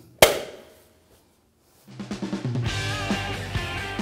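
A single sharp snap as a wheel center cap is pressed home into an alloy wheel, ringing out briefly. After a silent gap, music with drums and guitar begins about two seconds in.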